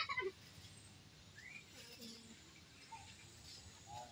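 Faint, scattered bird chirps over quiet outdoor background noise, with a brief burst of voices right at the start and again near the end.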